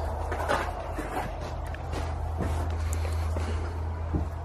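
Footsteps and scattered knocks and creaks from someone walking through a derelict wooden shed, over a steady low rumble.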